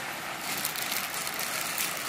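Heavy rain falling steadily on corrugated tin roofs and standing water, an even hiss with no distinct drops.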